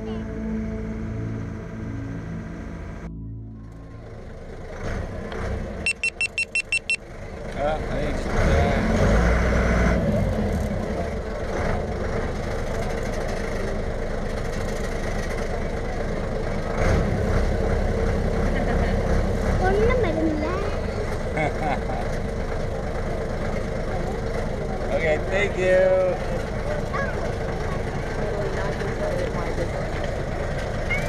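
Music for the first three seconds, cut off suddenly; then a passenger ferry's engine running steadily under passengers' chatter, with a quick run of about eight beeps a few seconds after the music stops.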